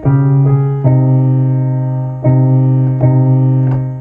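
Piano sound played from a keyboard with both hands: the two chords of the intro, D-flat major and C minor, over a D-flat and C bass. Four chord strikes, each held and ringing out before the next.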